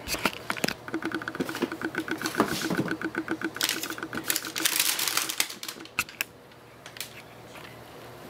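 Cardboard shoebox lid being pulled open, rubbing against the box in a fast, even chatter of about eight clicks a second. Tissue paper then crinkles as it is unfolded, followed by a few light taps.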